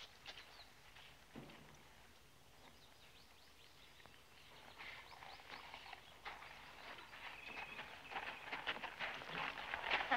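A horse's hooves stepping on packed dirt in scattered knocks. They are faint at first and grow denser and louder over the last few seconds as the horse moves off.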